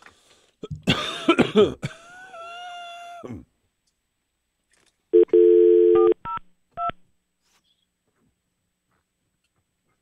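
A person coughs loudly about a second in. Then a telephone dial tone sounds for about a second, followed by three short keypad beeps as a number is dialled to call out.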